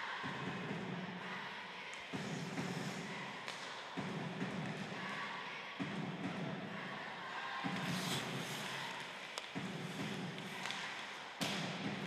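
Live ice hockey play: occasional sharp knocks of sticks and puck and skates scraping the ice. Under them runs a steady arena background whose low part starts and stops every couple of seconds.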